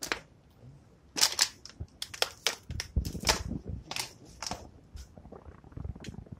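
Footsteps crunching over rubble and litter on a tunnel floor, a run of sharp, irregular crunches and clicks.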